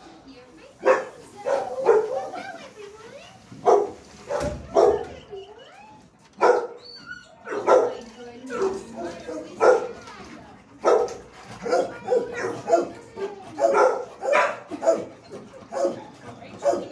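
Dogs barking over and over in a hard-walled shelter kennel, sharp barks every half second to second starting about a second in, with some wavering higher yips and whines between.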